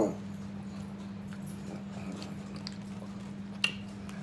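A steady low hum under faint eating sounds: a few soft clicks and one sharper click near the end.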